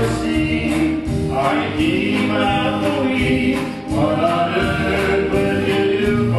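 A live gospel band performing a song: a man singing lead into the microphone over the band, with a steady beat.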